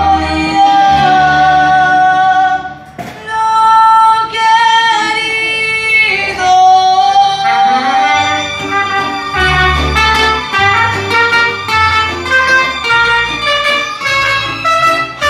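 A live mariachi band plays: a woman sings long held notes over strummed guitars and vihuela, bowed violins and a pulsing bass line. There is a brief lull about three seconds in.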